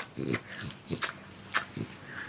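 A French bulldog held close makes three short, low grunting sounds, with a few sharp clicks in between.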